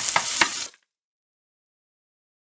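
Chopped onion and garlic sizzling in hot vegetable oil in a pan, stirred with a wooden spoon that gives a few sharp scrapes and taps. The sound cuts off suddenly under a second in.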